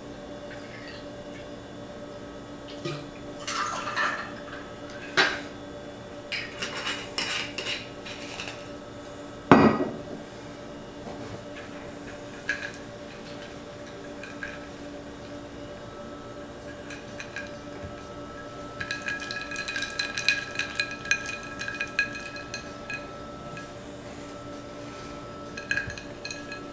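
Glassware and ice being handled on a wooden bar top while a gin martini on the rocks is mixed: scattered clinks and knocks, one loud knock about ten seconds in, and a quick run of ringing glass-and-ice clinks near twenty seconds in.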